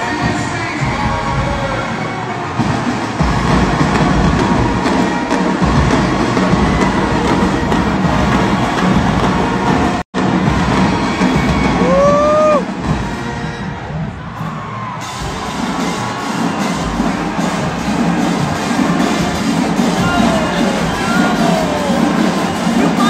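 A large marching band's brass and drums playing live in an arena, with the crowd cheering over it. The sound cuts out sharply for an instant about halfway through, then resumes.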